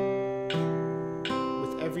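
Steel-string acoustic guitar fingerpicked slowly, single notes of a C chord plucked one at a time about every three-quarters of a second (80 beats a minute) and left to ring into each other. This is a beginner's thumb–index–thumb–middle picking pattern.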